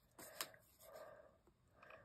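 Near silence: faint handling of paper cards on a table, with one soft click about half a second in.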